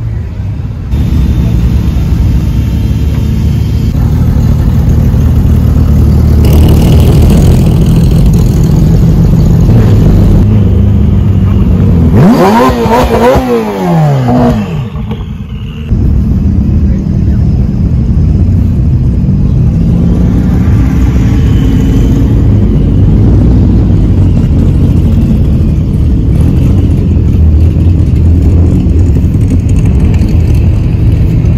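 Car engines running, with a steady low rumble. About twelve seconds in, an engine is revved up and back down a couple of times.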